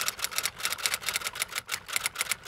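A rapid, slightly uneven run of sharp clicks, about nine a second, like typing on keys: an edited-in sound effect.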